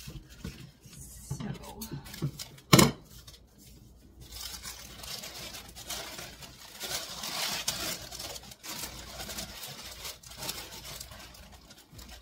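Tissue paper rustling and crinkling as a wrapped bundle is handled and tied. There is one sharp knock about three seconds in.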